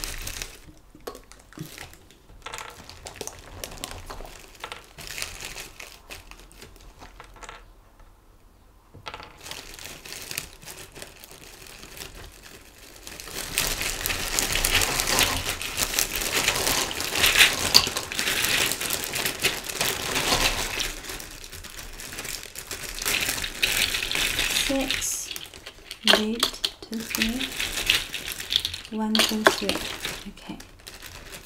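Plastic bag crinkling as small plastic bottles and caps are pulled out and handled, with light clicks of plastic set down on the table. The crinkling is quieter at first and loudest through the middle.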